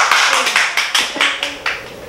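A short burst of hand clapping from a few people, with single claps standing out, fading out over about a second and a half.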